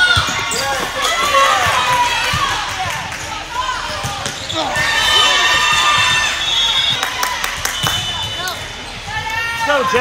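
Indoor volleyball rally on a hardwood gym court: sharp ball contacts and thuds, with players calling and spectators shouting and cheering as the point is won.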